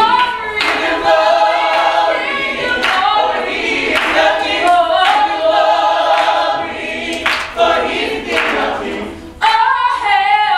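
Small mixed gospel choir singing a praise song without instruments, with hand claps keeping time about once a second. The singing dips briefly just before the end, then the next phrase comes in loud.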